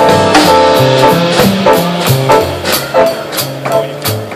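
Live jazz combo playing: an upright double bass walks a line of low notes under a drum kit's cymbal strikes and higher pitched instruments.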